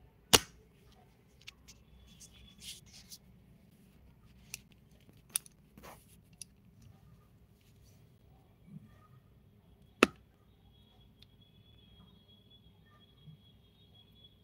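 Handling noise of a smartphone being picked up and repositioned: scattered sharp clicks and knocks, the two loudest about half a second in and about ten seconds in, over a faint steady hum.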